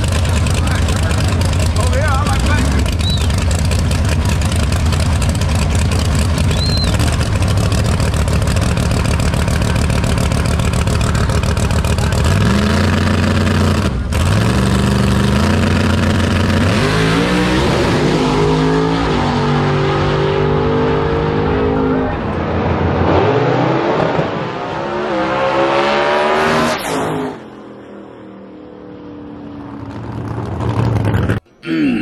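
Drag race car engines idling loud and rough at the starting line, then revving up about twelve seconds in and launching. The pitch climbs again and again as the cars pull away and fade down the track, and the sound drops off suddenly near the end.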